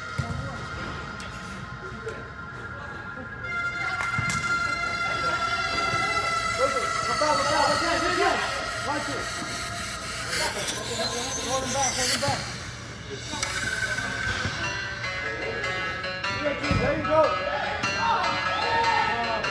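Players and spectators shouting across an indoor soccer pitch over background music with long held notes. There is a dull thump near the end.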